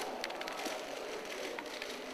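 Many camera shutters clicking irregularly over steady room noise in a hall.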